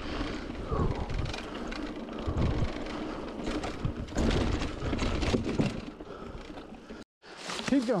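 Mountain bike ridden over dirt singletrack: tyre and trail noise with the bike rattling over bumps, and the rider's heavy breathing. Just after 7 s the sound cuts out briefly, then a groan-like voice falls in pitch.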